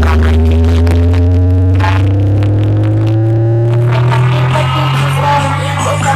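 DJ sound system playing electronic music at high volume with heavy bass: a deep sustained bass tone and its overtones slowly rise in pitch through the whole stretch, like a build-up sweep.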